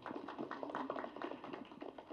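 Light, scattered applause: a faint, quick run of hand claps from a few people.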